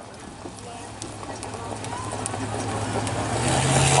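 Engine of a Chevrolet pickup pulling a mobile starting gate, running steadily and growing louder as it approaches, its note stepping up near the end.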